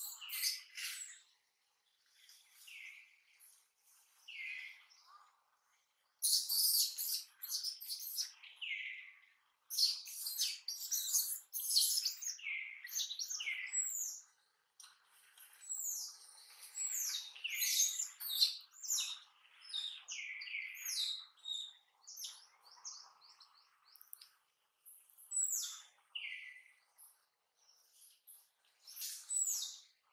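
Forest birds chirping and calling: many short, high notes, each sliding downward, coming in overlapping flurries with brief pauses between.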